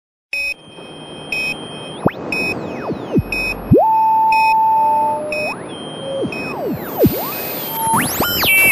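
Synthesized electronic sound effects: short beeps repeating about once a second, under pitch sweeps that glide up and down, with a steady held tone in the middle and a climb into a rising sweep near the end.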